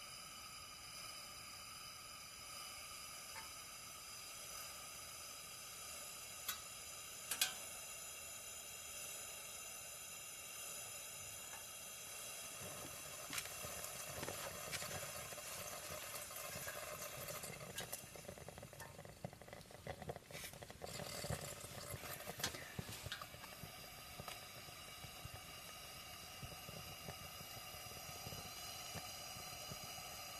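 Camping lantern burning with a faint, steady hiss, broken by a few sharp clicks and pops. About halfway through, the sound turns rougher and crackly for several seconds, then settles back to the even hiss.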